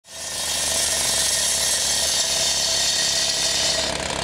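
Petrol cut-off saw with a diamond blade cutting into a slab of asphalt: a steady, high grinding hiss over the engine running, starting abruptly and easing off near the end.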